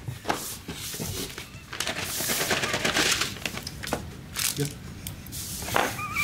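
Paper and cardboard rustling and crinkling as a small package is opened and its contents handled, loudest about two to three seconds in.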